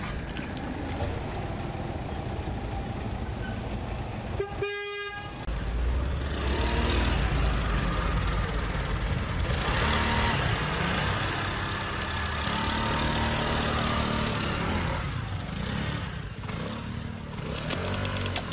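Street sound with motor vehicles: a brief horn-like toot about four and a half seconds in, then a nearby car engine running with a strong low rumble from about six seconds in, easing off near the end.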